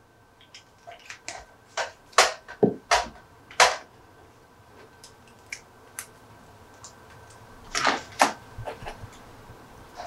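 Small 3D-printed resin toy gun parts clicking and tapping as they are handled, fitted together and set on a cutting mat. There is a run of light clicks in the first few seconds and another small cluster near the end.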